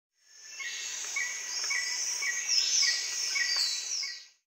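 Tropical rainforest ambience: a dense, high chorus of insects with bird calls, including a short chirp repeated about twice a second and a few falling whistles. It fades in at the start.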